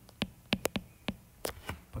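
Stylus tip tapping and clicking on a tablet's glass screen while writing by hand: about eight short, sharp ticks at uneven intervals.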